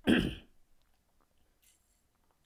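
A man clears his throat once, briefly and loudly, at the start, because of a frog in his throat. Then come faint small sounds of him sipping water from a glass.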